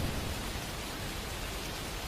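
Steady rain falling, an even hiss with no single drops or other events standing out.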